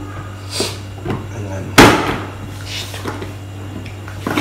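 Hand-cranked plastic food chopper worked on a table, giving short rasping bursts, with one loud sharp knock about two seconds in.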